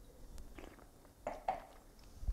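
A person sipping red wine and working it around the mouth: faint wet mouth sounds, with two short, louder sounds about a second and a half in.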